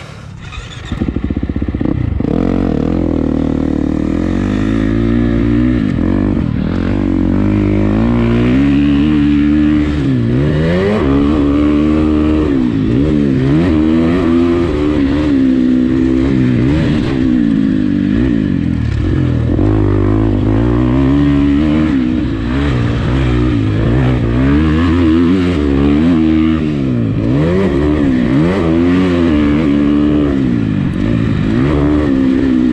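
2019 Husqvarna FC350's 350 cc four-stroke single-cylinder engine firing up about a second in, then ridden hard, its revs climbing and dropping again and again through the gears.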